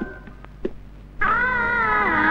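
Dramatic film background score. A held chord fades to near quiet, then just over a second in a wavering, eerie synthesizer tone enters with several slowly bending notes held together.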